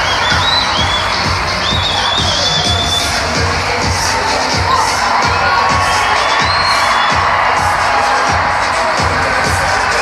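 Basketball arena crowd cheering and shouting over loud music with a steady beat, high whoops and shouts standing out above the din.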